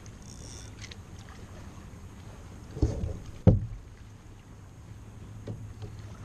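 Two sharp knocks about two-thirds of a second apart, the second the loudest, as a small white perch is brought aboard a plastic kayak and handled. A low steady rumble runs underneath.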